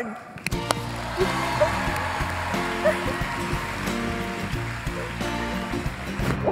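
Walk-on music with a steady beat, starting about half a second in, over a large crowd applauding and cheering.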